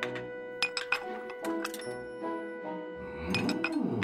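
Glass clinking in a series of light, quick strikes, thickest in the first second and a half, over background music with a long held note.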